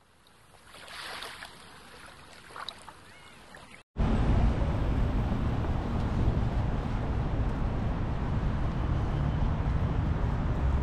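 Faint, even hiss for the first few seconds, cut off abruptly about four seconds in. Then steady wind noise on the microphone over outdoor street traffic.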